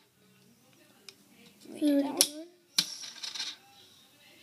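A few sharp clicks and taps of small hard objects being handled, the loudest two about two and three seconds in, with a short murmur of a child's voice just before the middle one.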